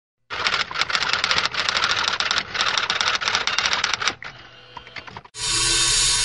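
Rapid typewriter-like mechanical clatter for about four seconds, as an intro sound effect. A quieter stretch follows, then a steady hiss with a low hum begins near the end.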